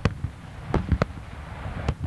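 Daytime aerial fireworks: a rapid, irregular string of sharp bangs from shells bursting overhead, about five in two seconds, three of them close together in the middle, over a steady low rumble.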